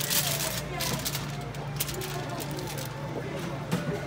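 Indistinct voices and room noise of a restaurant, with a few short clicks and crinkles as a rack of ribs is handled on aluminium foil and sliced with a long knife on a wooden cutting board.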